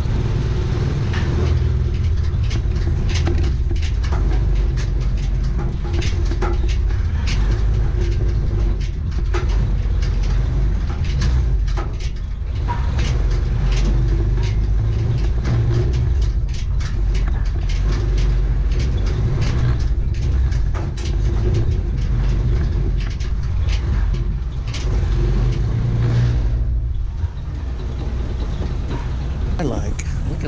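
Small motorcycle engine of a motorcycle-tricycle with a covered cab running steadily as it is ridden over a rough dirt yard, with frequent rattles and knocks from the cab and frame. The engine sound dips briefly about three seconds before the end.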